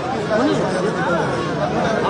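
Crowd chatter: many men's voices talking over one another close by, with no single voice standing out.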